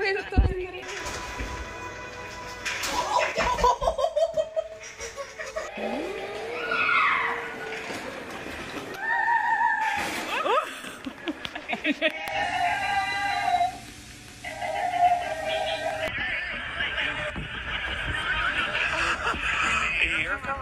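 A knock from a giant wooden block tower coming down near the start, then a string of short scenes of children's voices and laughter over music, changing every few seconds.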